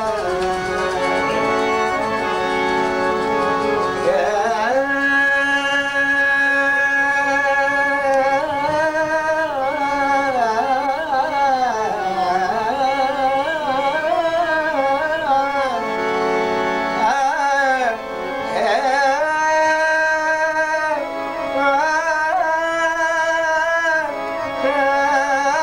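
A man singing a slow Punjabi song, holding long notes that bend and waver in ornaments, over an instrumental accompaniment.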